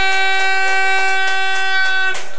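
An air horn sounds one long steady blast at a single pitch, which cuts off just after the end.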